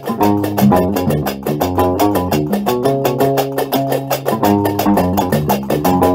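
Gnawa guembri, a three-stringed bass lute, plucking a repeating riff over a fast, even clacking beat.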